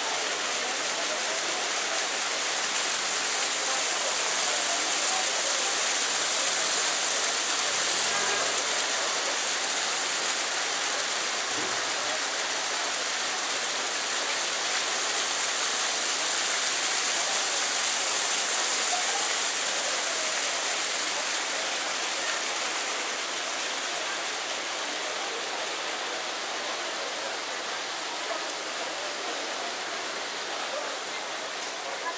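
Fountain jets splashing into a basin: a steady rush of falling water, loudest through the middle and fading over the last several seconds.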